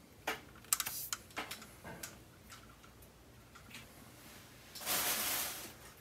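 Light plastic clicks and knocks from a large plastic Transformers figure being handled and lifted away, several in quick succession in the first two seconds, then a brief soft rustle near the end.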